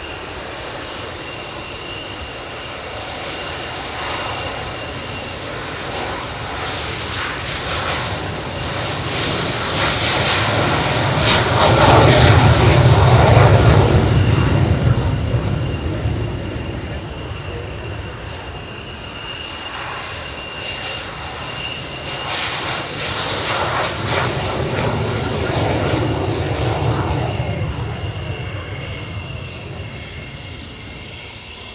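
Jet trainers on their take-off rolls, one after another: the twin J85 turbojets of a Spanish Air Force F-5 build to a loud rumble and rush about twelve to fourteen seconds in, then fade. The single Adour turbofan of a BAE Hawk swells again over the last third, with a steady high whine throughout.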